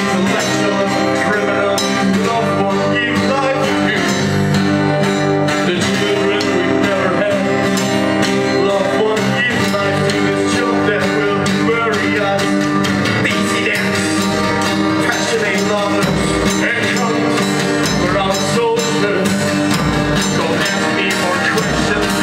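Live neofolk band playing: strummed acoustic guitar with a man singing into a microphone and steady percussion on drum and tambourine.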